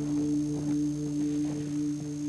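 Ambient background score: a sustained low drone with a higher note pulsing about three times a second.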